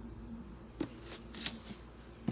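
Books being handled and set down: a light paper shuffling with two soft knocks, a little under a second in and again about half a second later.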